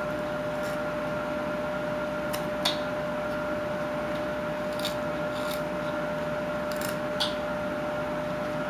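Carving knife taking short shaving cuts in a wooden block: a handful of brief, sharp scrapes spaced a second or so apart, over a steady background hum.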